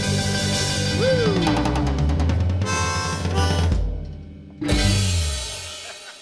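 Live rock band of acoustic and electric guitars, bass guitar and drum kit playing the closing bars of a song: a quick drum roll, the music falling away, then one final chord struck about four and a half seconds in that rings out and fades.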